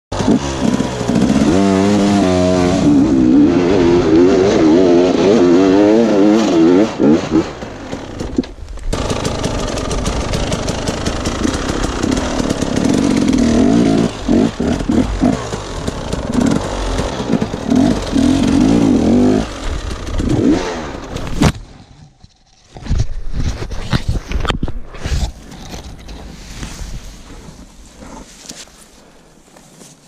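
Two-stroke enduro dirt bike engine revving hard, its pitch rising and falling with the throttle as it climbs a muddy trail. The engine stops abruptly about two-thirds of the way through, followed by scattered knocks and rustling.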